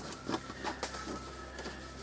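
A few light clicks and taps of a screwdriver and fingers working on a small steel computer case as it is disassembled, over a steady low hum.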